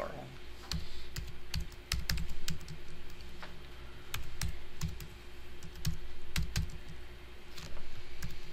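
Computer keyboard being typed on: irregular key clicks in short runs as a file name is entered.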